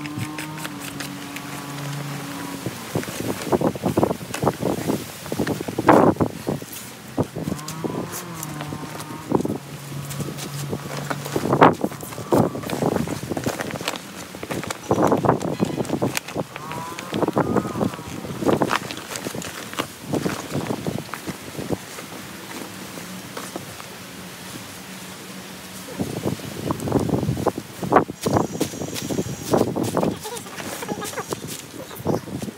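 Vinyl of an inflatable pool being handled, with irregular crinkling, rustling and soft thumps of the plastic. A low steady drone sounds briefly at the start and again for a few seconds about a third of the way in.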